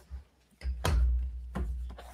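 A few light knocks, about three in two seconds, over a low rumble: handling noise from things moved or tapped on a desk.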